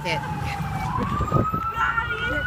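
Emergency vehicle siren in a slow wail: its pitch falls to a low point about three-quarters of a second in, then climbs again.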